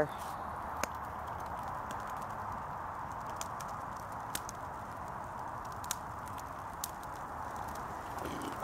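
Wood campfire in a fire ring giving a few faint, scattered pops and crackles over a steady rushing noise.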